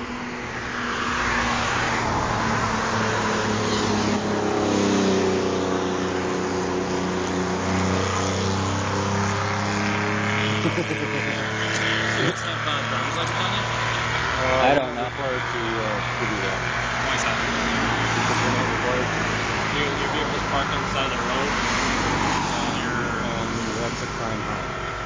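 Cars passing by on the road, their engine and tyre noise swelling and fading, with one falling in pitch as it goes past a few seconds in and another passing in the middle. A steady low engine hum runs underneath.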